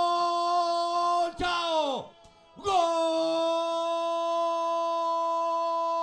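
A football commentator's drawn-out goal cry, a man's voice shouting one long held "Gooool" on a steady pitch. The first cry slides down and breaks off about two seconds in. After a quick breath a second long held cry starts and keeps its pitch.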